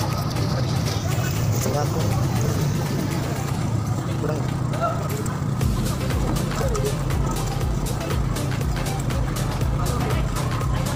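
Music mixed with the steady noise of a busy street-food market: voices and street sounds.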